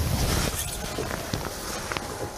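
Rustling of rain gear and shuffling on a boat deck as a person handles a caught fish, with a few faint ticks over a steady noisy wash.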